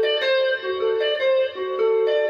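Fender electric guitar with a clean tone playing a seben (soukous) melody in G: a steady run of picked notes, often two sounding together, about three a second.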